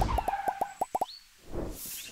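Cartoon pop sound effects for an animated logo: a quick run of about eight short pitched plops in the first second, then a soft whoosh near the end.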